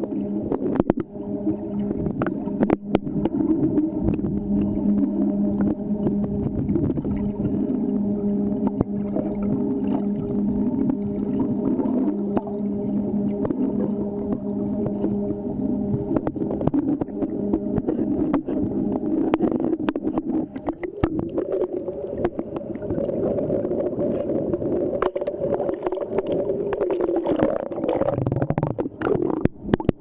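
Muffled underwater sound picked up by a submerged camera: a continuous low rumble with many small clicks and knocks, and a steady hum that stops about halfway through.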